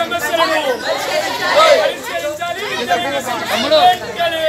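A group of children's voices talking and calling out over one another, with no single clear speaker.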